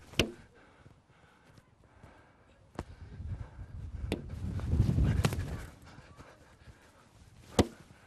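Five sharp, separate knocks a second or more apart, the last the loudest: a Reflex training ball bouncing off the grass and slapping into goalkeeper gloves. A low rumble swells and fades in the middle.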